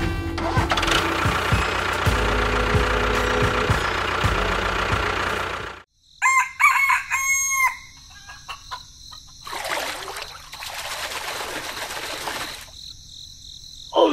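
A dense, steady sound cuts off suddenly about six seconds in. A rooster crows once, then a rushing hiss follows for about three seconds.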